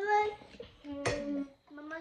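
A young child's voice singing two drawn-out notes, the first rising at the start, the second held steady for about half a second.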